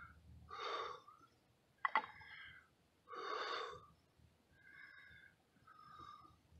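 A man's heavy breathing, long breaths every few seconds, as he catches his breath after working the friction-fire roll. A couple of sharp clicks come about two seconds in.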